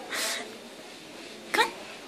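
A puppy's single short, breathy snort near the start.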